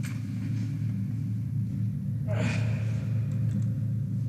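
A man gasps for breath once, a short, sharp intake about two and a half seconds in, over a steady low hum.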